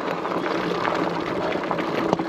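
Steady rolling noise of a fat-tyre e-bike's four-inch-wide tyres on a rough gravel trail.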